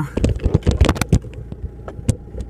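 A quick run of clicks and knocks from the camera being handled and repositioned, dying down after about a second, over a low steady hum inside the car.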